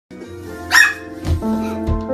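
Background piano music with a single short, loud bark about three-quarters of a second in.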